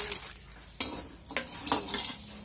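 A metal ladle scraping and clinking against a wok as food is stirred and fried in it, with three sharp scrapes, one about a second in and two near the end.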